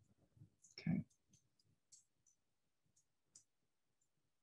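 Near silence broken by one short spoken "okay" about a second in and a few faint, scattered clicks.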